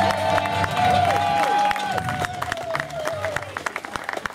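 Crowd cheering and clapping as a ukulele song ends: a long drawn-out cheer slowly falls in pitch, with a few shorter whoops in the first two seconds and scattered handclaps throughout, thinning out near the end.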